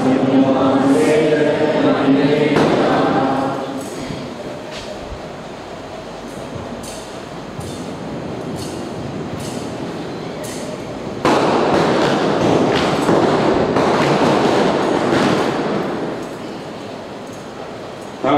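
A voice chants for the first few seconds. Then come light metallic clicks and clinks of a thurible's chain and lid being handled, over a steady rustling background that jumps to a loud rush of noise about eleven seconds in and fades away near the end.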